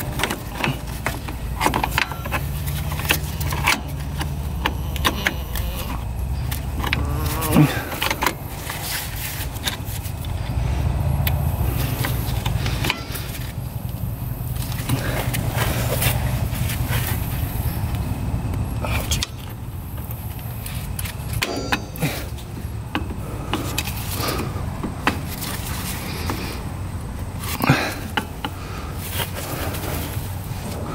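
Metal clinks, clicks and scrapes of new brake shoes and their stiff return springs being worked onto an ATV drum-brake backing plate, over a steady low rumble.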